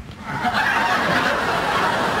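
Studio audience laughing, rising about half a second in and then holding steady.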